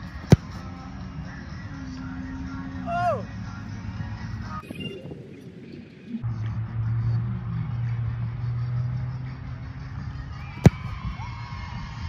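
American football kicked off a holder's hold for field goals: two sharp thumps of the foot striking the ball, one just after the start and one near the end, about ten seconds apart, over a steady low hum.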